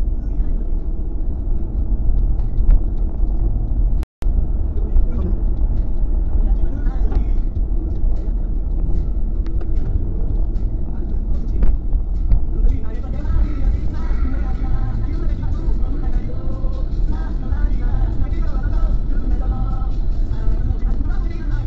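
Steady road and engine drone heard from inside a Kia Carens cruising on a highway. The sound cuts out for a moment about four seconds in.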